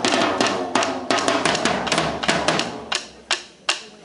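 Drumline of marching snare drums playing fast, dense stick patterns, thinning out near the end to two single sharp hits.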